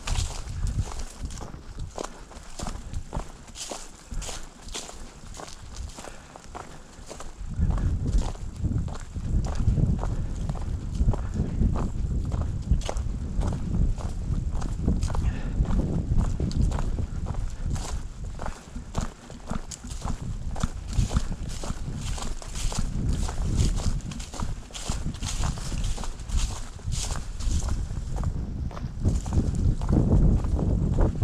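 A hiker's footsteps on a dry dirt and leaf-littered mountain trail, a steady walking rhythm of crunching steps. From about seven seconds in, wind buffets the action-camera microphone as a heavy low rumble under the steps.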